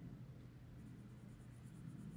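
Faint scratching of a felt-tip marker colouring in a small icon on a paper page, in quick short strokes that grow clearer about a second in, over a low steady room hum.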